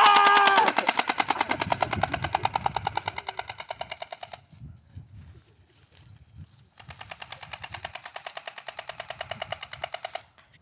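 Battery-powered toy gun's electronic machine-gun sound effect: a fast, even rattle of shots that fades out over about four seconds, stops, then starts again about seven seconds in.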